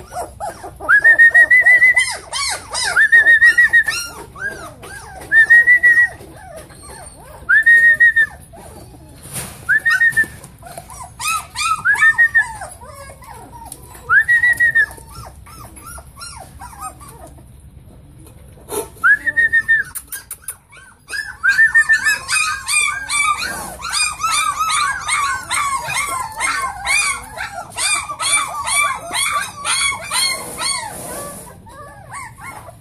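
German Shorthaired Pointer puppies whining and yelping. In the first half one pup gives a run of loud, high whines about every two seconds. After a short lull, many pups whimper and squeal together in a constant overlapping chorus until the end.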